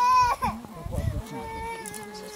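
A baby crying: a short high cry at the start, then a longer, steady wail about a second in.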